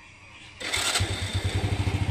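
Honda Wave 100 motorcycle's small single-cylinder four-stroke engine starting: a short burst of cranking just over half a second in, catching about a second in and settling into a steady, evenly pulsing idle.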